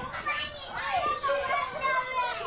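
A group of children talking and calling out over one another outdoors, several high voices at once.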